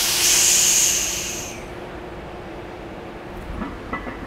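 A loud, long hiss that fades out about a second and a half in: a forceful breath through the teeth as a lifter braces under a heavy loaded squat bar.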